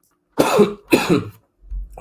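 A man coughing twice in quick succession, two short harsh bursts about half a second apart.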